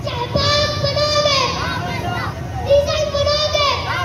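A young boy singing out two long, held phrases into a microphone.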